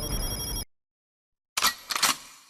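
A rapid, bell-like electronic ringing, like a telephone bell, that cuts off suddenly about half a second in. After a second of silence, two short noisy bursts come near the end.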